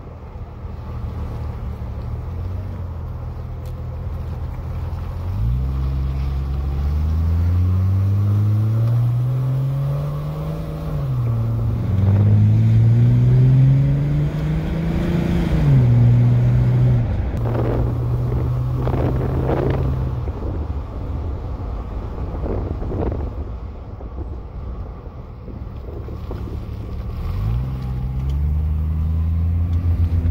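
Jeep Grand Cherokee ZJ engine heard from inside the cabin under hard acceleration. The revs climb, dip once at a gear change, climb again, drop away as the throttle is let off about halfway through, then climb again near the end. These are the acceleration-then-slowing passes of a new brake pad and rotor break-in.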